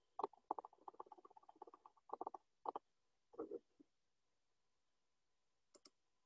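Faint computer keyboard key taps: a quick run of presses in the first two seconds, a few separate taps over the next second and a half, and two more near the end, as text is deleted in a document.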